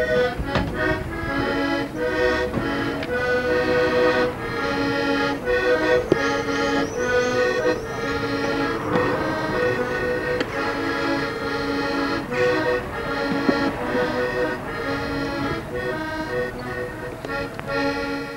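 Two-row button accordion (melodeon) playing a brisk traditional Irish tune, a quick run of melody notes over a steady low accompanying note.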